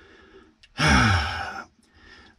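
A man's sigh lasting about a second, starting a little under a second in: a breathy exhale with the voice's pitch falling.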